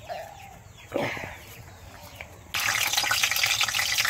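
Potatoes frying in hot oil in a wok over a wood-fired clay stove: a steady sizzle that starts suddenly just past halfway. Before it, a brief call about a second in.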